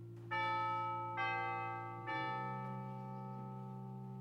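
Church chimes struck three times, about a second apart, each stroke ringing on and fading. Under them a held low chord sounds, and it changes with the third stroke.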